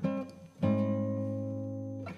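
Solo guitar: a brief note, then about half a second in a chord is struck and left to ring, slowly fading.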